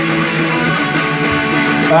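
Electric guitar strumming steady chords between sung lines of a punk song; the singing voice comes back at the very end.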